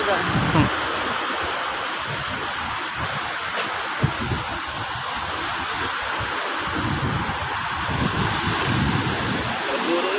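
Steady wash of sea water at the shoreline, with one sharp tap about four seconds in.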